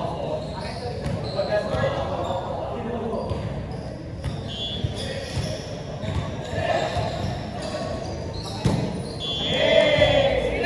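Indoor volleyball play in a large echoing hall: players talking and calling out to one another, with a couple of sharp ball hits, one near the middle and a louder one near the end.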